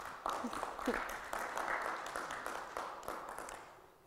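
A small audience applauding a speaker's introduction. The clapping starts right away and fades out over the last second or so.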